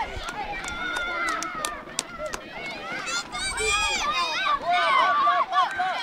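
A crowd of spectators shouting and cheering, several voices overlapping with no clear words, with higher-pitched voices joining in about three to four seconds in.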